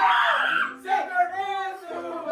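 A group of young people yelling and shrieking in an excited reaction, loudest in a burst at the start, then breaking into animated voices.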